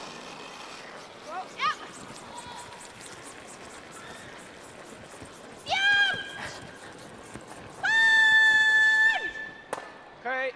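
Curling brush sweeping the ice in fast, even strokes ahead of a sliding stone, with a player's shouted sweeping calls: two short yells about a second and a half in, another near six seconds, and one long held shout, the loudest sound, about eight seconds in.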